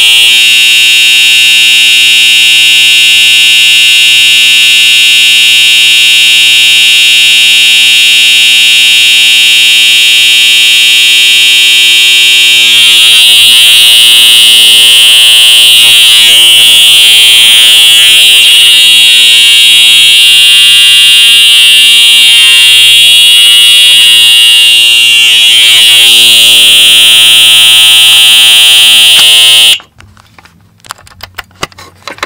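Cerberus Pyrotronics EHM-D fire alarm horn/strobe, a rebranded Wheelock horn strobe, sounding a continuous, uncoded horn signal: one very loud, steady, high buzzing tone. It cuts off suddenly at the very end.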